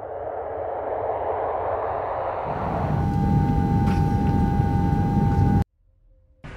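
A swelling rumbling whoosh that grows louder, with a deep rumble and then a steady high tone joining about halfway, cut off suddenly near the end.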